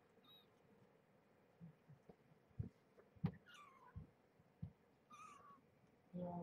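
Faint, high-pitched mews from young kittens, about two and a half weeks old: one falling in pitch about halfway through, another near the end. A few soft thumps of movement come in between, the sharpest just before the first mew.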